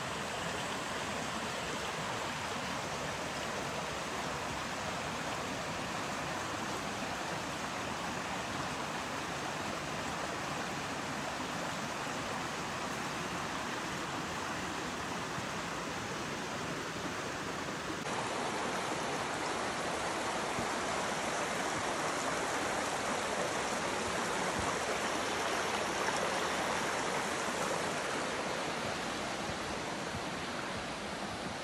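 A rocky forest creek rushing steadily, a constant hiss of flowing water; it turns suddenly louder and fuller about two-thirds of the way through.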